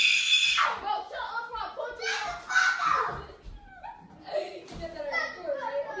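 A young person's high-pitched scream, held until just under a second in, then excited young voices talking over each other.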